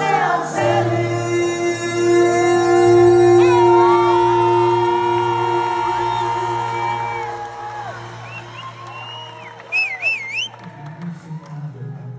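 Live band and male vocals holding a long sustained note over a held chord, fading away about eight seconds in. Near ten seconds in, a brief high wavering tone rises above the fading music.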